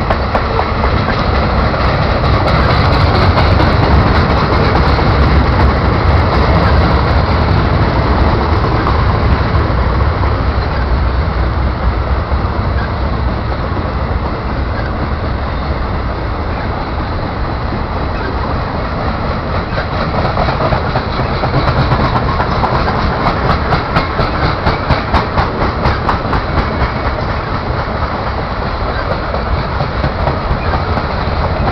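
Loaded open-top freight cars of a Montreal, Maine & Atlantic train rolling past: a steady wheel-on-rail rumble with the clickety-clack of wheels over rail joints. The clacking comes through more clearly and rhythmically in the last third.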